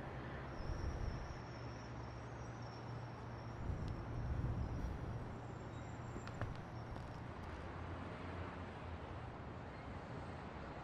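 A low, steady rumble, with a faint high thin whine above it through roughly the first two-thirds.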